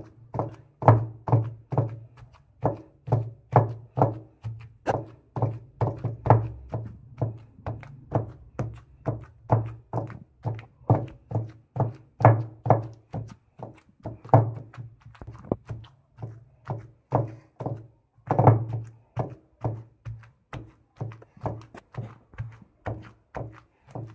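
Pestle pounding boiled potatoes in a stone kundi mortar: steady, even thuds about two a second, mashing the potatoes.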